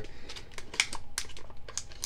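Clear plastic blister packaging crinkling and crackling as it is handled, a string of irregular small clicks.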